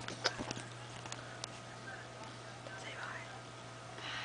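A few sharp clicks and knocks from a handheld camera being handled in the first half-second, then a quiet room with a steady low hum and a faint whisper.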